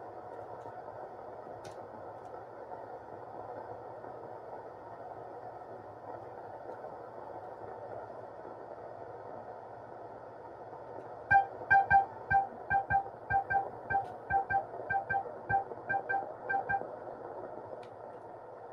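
Modular synthesizer music: a quiet steady mid-range drone. About two thirds of the way in, a repeated short note at one pitch begins, about three a second with a low thud under each, and stops about a second before the end. The notes are voiced by a Mannequins Just Friends module, sequenced from Teletype code.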